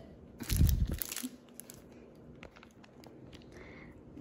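Plastic sleeve of spice-jar labels crinkling as it is handled, with a handling bump about half a second in. Faint scattered clicks and rustles follow.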